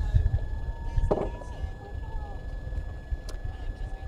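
Distant voices of spectators and crews shouting and cheering, with one louder call about a second in, over a low, uneven rumble.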